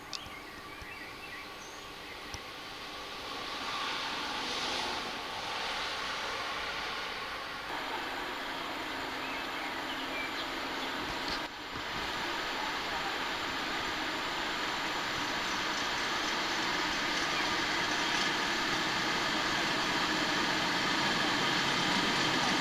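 Electric locomotive-hauled passenger train approaching along the track, its running noise growing steadily louder.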